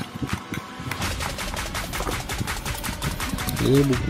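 Cardboard box and paper instruction leaflet handled close to the microphone, giving a dense run of rapid crackles and rustles.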